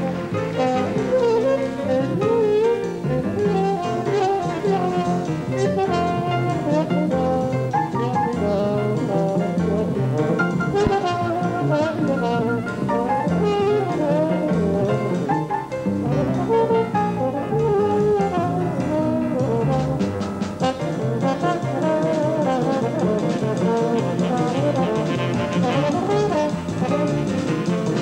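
Live jazz trombone solo: fast, winding melodic lines over a band keeping a steady beat.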